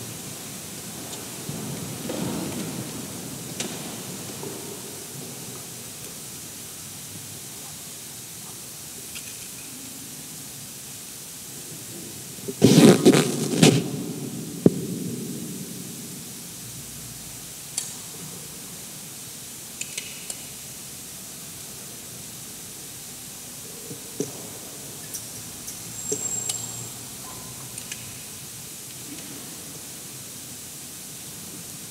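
Steady hiss of a quiet church interior with a few light clicks and knocks of objects being handled, and about halfway through a loud clatter of several sharp knocks over a second or so.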